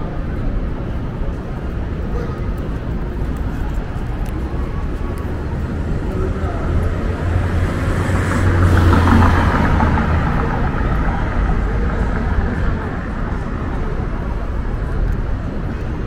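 City street ambience: a steady traffic rumble with a vehicle passing, loudest about nine seconds in, and voices of passersby.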